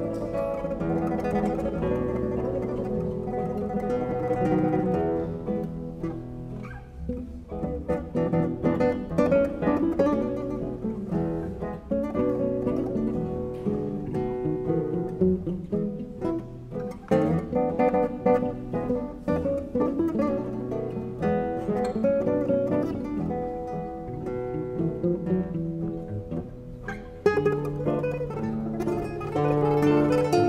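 A trio of nylon-string classical guitars playing an instrumental piece: plucked melody notes over lower accompanying notes and basses. Near the end the playing thins out briefly, then comes back in suddenly and louder.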